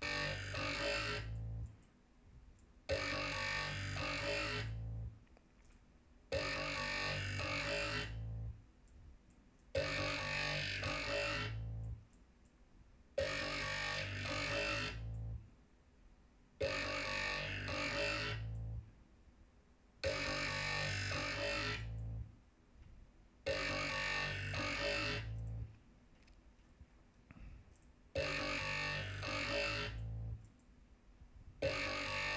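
Dubstep growl bass made in the Native Instruments Massive software synth, a short phrase looping over and over: about two seconds of heavy, buzzy bass, then a gap of about a second and a half, nine times over. The growl has vowel-like changes in its tone from filter automation.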